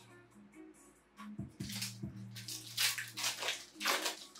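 Foil trading-card booster pack crinkling and tearing open in several rustling rips from about a second in, over quiet background music.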